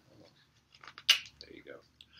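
Pages of a paper catalog being handled and turned: a few light clicks and one brief, crisp paper rustle about a second in.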